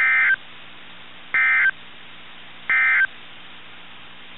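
Three short bursts of Emergency Alert System (SAME) digital data tones from a NOAA Weather Radio broadcast, each about a third of a second long and spaced about 1.35 s apart. This is the end-of-message code that closes the tornado warning.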